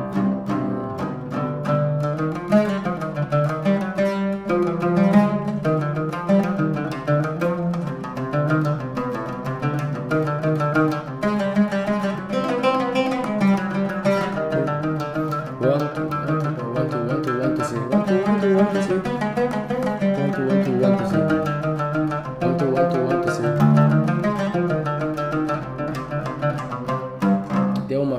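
Solo Arabic oud played with a plectrum: a continuous flowing phrase of quick plucked notes in a 7/8 (seven-eight) compound rhythm, played as an example of phrasing freely over that meter.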